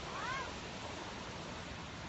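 Steady wind and water noise at the shore. Near the start there is one short, high cry, about a third of a second long, that rises and then falls in pitch.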